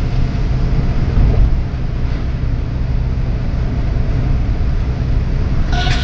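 Steady low rumble of tyres and engine heard from inside a moving car cruising on a highway. Music comes in just before the end.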